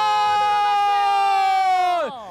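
A football commentator's long goal call, one shouted vowel held on a single note after a headed goal, sagging slightly in pitch and breaking off near the end.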